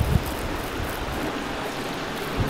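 Water spraying steadily from a garden hose spray gun fed through a RainPoint watering timer whose zone 1 valve is open, with the tap only partly open: an even hiss of spray.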